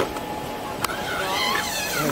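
Running noise of an open-top double-decker tour bus and the street around it, with a sharp click a little under a second in and a high, wavering squeal over the last second.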